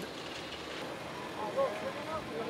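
Steady outdoor background noise, with faint distant voices talking from about a second and a half in.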